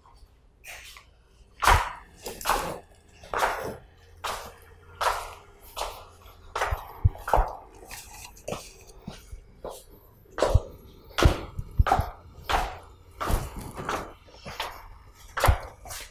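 Footsteps, about fifteen to twenty evenly paced steps, coming down a staircase and across a hard tiled floor.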